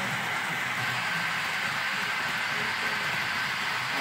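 Steady hiss-like room noise, even in level, with faint voices in the background.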